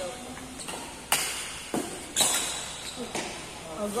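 Badminton rackets striking a shuttlecock during a rally: four sharp hits with a short echo, the loudest about a second and about two seconds in.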